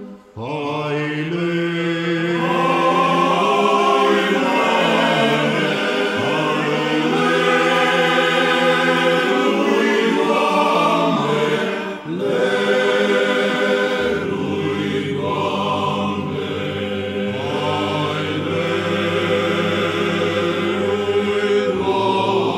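Romanian Orthodox men's choir singing a Christmas carol a cappella in several voice parts. Brief breaths break the singing just after the start and about halfway. From about two-thirds through, a low bass note is held steady under the melody.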